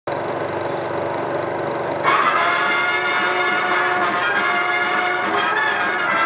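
A steady buzzing hum on the soundtrack of a 16mm film print, then, about two seconds in, the opening title music of the 1951 film starts abruptly and plays on.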